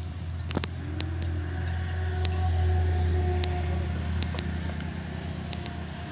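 A low engine hum swells to its loudest about halfway through and then fades again, with a few faint clicks over it.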